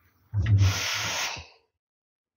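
A short hissing rush of noise lasting about a second, with a low rumble at its start.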